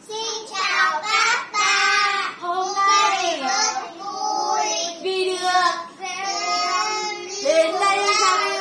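Young children's voices chanting a greeting phrase together in a sing-song, half-sung way, with a woman's voice joining in.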